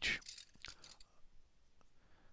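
A few faint, brief clicks and taps of small painting supplies being handled while a brush is searched for. The rest is quiet room tone, with the tail of a spoken word at the very start.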